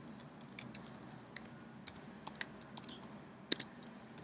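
Typing on a computer keyboard: a run of irregular key clicks, with a few sharper, louder keystrokes among them.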